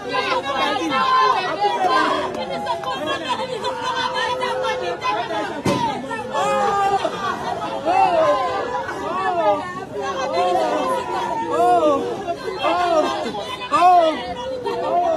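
Several women wailing and crying in grief, overlapping voices in repeated cries that rise and fall in pitch. A single short click sounds about halfway through.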